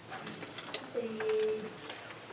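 A voice holding a drawn-out hesitation sound ('uhh') for about half a second in the middle, among a few sharp clicks and paper rustles.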